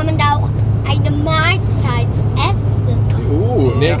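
Steady low drone of road and engine noise inside a pickup truck's cabin while driving, with a few short high-pitched voices over it and a lower voice near the end.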